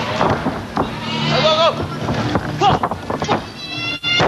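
Shouts and drawn-out yells over the noise of a crowd in a hall: a rising-and-falling yell about a second in, another near three seconds, and a shrill high cry just before the end.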